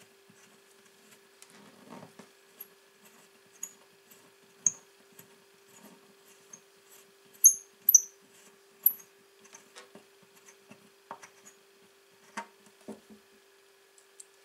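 Small hand-tool work in an acoustic guitar's bridge pin holes: faint scrapes and clicks against the wood. A run of short, high-pitched squeaks comes in the middle, loudest a little past halfway.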